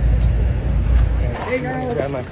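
Low, heavy rumble of outdoor street noise, then people's voices calling out about one and a half seconds in.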